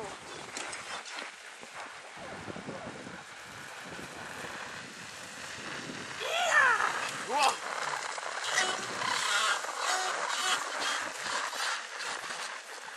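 A person's voice calls out twice, about six and a half and seven and a half seconds in, each call rising and then falling in pitch, over a steady hiss of outdoor noise.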